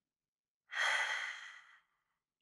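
A man sighs once: a single breathy exhale, under a second long, that fades away.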